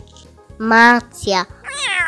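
A house cat meowing once: a long call that starts high, falls in pitch and then holds. It begins in the last half-second.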